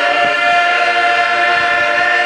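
Men's barbershop chorus singing unaccompanied, holding one long, steady close-harmony chord at the end of a song.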